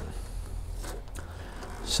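Quiet room tone with a steady low hum and a couple of faint clicks about a second in, from wires being handled.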